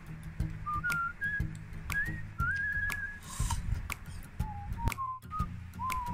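Background music carried by a whistled melody of short held notes stepping up and down, over light clicks, with a brief break near the end.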